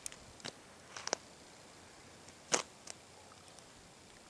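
A handful of short, sharp clicks and taps at irregular spacing over a faint steady hiss, the loudest about two and a half seconds in.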